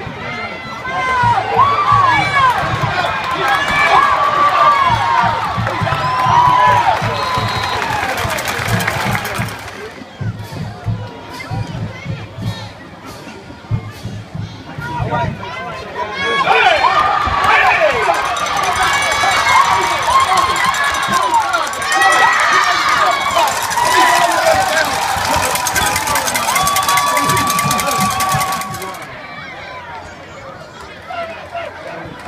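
Football crowd in the stands cheering and yelling, many voices at once. The noise swells over the first several seconds, dies down for a few seconds, then rises again for a longer burst of cheering before dropping off near the end.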